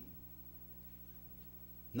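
A pause in the speech, filled only by a faint, steady low hum.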